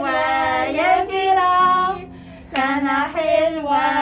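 Voices singing a birthday song in drawn-out notes, with a short break about two seconds in before the next phrase.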